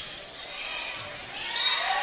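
Gymnasium crowd noise, with a single sharp ball impact on the court about a second in. Near the end comes a short, steady, high whistle blast, the referee ending the rally.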